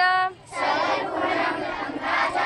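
Girls singing a devotional prayer: one girl's voice holds a note briefly, then from about half a second in a group of girls sings together in unison.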